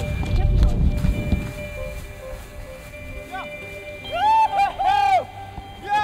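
Excited shouts from onlookers, several rising-and-falling calls from about three seconds in, loudest near five seconds. A low rumble fills the first second or so, and faint steady music runs underneath.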